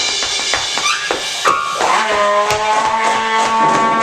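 Free-improvised jazz from trumpet, percussion and piano: scattered drum and percussion strikes, then from about halfway in, long held trumpet notes over them.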